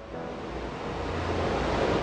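A rising whoosh of noise that swells steadily louder: the build-up riser of a logo sting sound effect.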